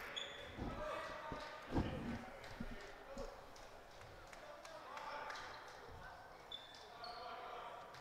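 Basketball bouncing on a hardwood gym floor, a few faint bounces in the first three seconds, under faint voices of players and crowd in the hall.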